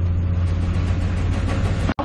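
A steady low hum with a faint hiss over it, cut off sharply for an instant near the end.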